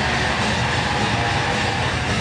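Punk rock band playing live at full volume: distorted electric guitars and drum kit merged into one loud, dense wall of sound.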